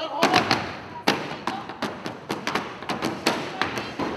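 Irregular sharp thuds and smacks, about a dozen in a few seconds: performers' feet stamping and scuffling on a wooden stage floor as two of them grapple in a staged fight.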